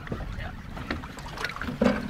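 Wind buffeting the microphone over choppy water lapping at the boat, a steady low rumble with a few light clicks. A short loud vocal sound near the end.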